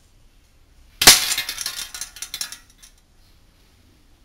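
A single shot from an Aimtop SVD gas-blowback airsoft rifle about a second in, test-firing after a fix for doubling, followed by metallic clinking and rattling from the hanging tin-can target for about a second and a half.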